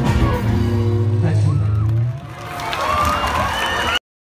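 Live band music with a held low chord that stops about two seconds in, followed by a quieter stretch of gliding, whistle-like tones with some crowd noise.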